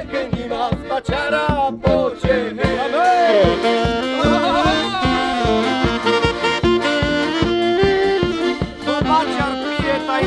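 Folk wedding band playing a lively instrumental tune: saxophone leading over accordion and tuba, with a drum keeping a steady beat of about three strokes a second.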